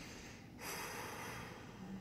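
A woman breathing out through her nose, a soft noisy exhale that swells about half a second in and fades over about a second.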